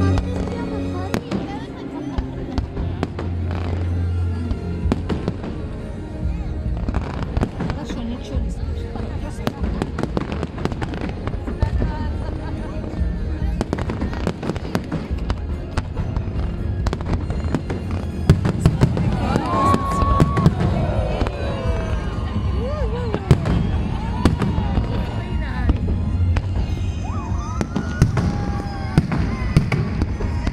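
Fireworks display going off close by: a continuous run of bangs and crackling bursts over a low rumble.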